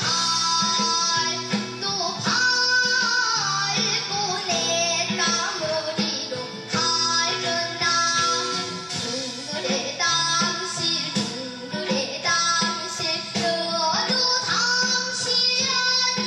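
A young girl singing a Korean folk song, a Jeju minyo, into a microphone in long held notes over instrumental accompaniment.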